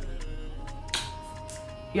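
Background music at low level: a steady bass line with held notes and a sharp high hit about halfway through.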